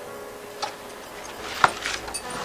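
Soft background film music holding quiet sustained tones, with two sharp ticks about a second apart.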